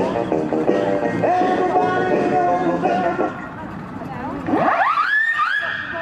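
Bluegrass-style music with a plucked banjo and guitar, cutting off suddenly about three seconds in. About a second later, high whistles rise in pitch and settle on a steady shrill note, in the manner of traction engine steam whistles.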